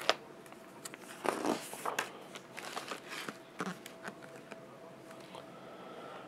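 Pages of a picture book being turned by hand: soft paper rustling with a few light brushes and taps, the louder ones in the first half.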